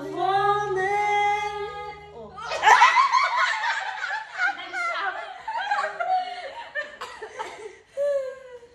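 A young woman's singing voice holds long notes for about two seconds, then a group of young women laugh together, loudest just after the laughter starts and trailing off toward the end.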